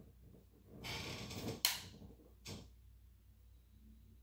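Handling noise as makeup things are picked up: a rustle lasting under a second, one sharp click, then a brief second rustle.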